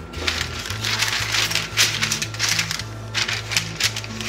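Baking parchment paper rustling and crinkling in a string of short bursts as it is spread over a metal baking tray, over background music with a steady repeating bass line.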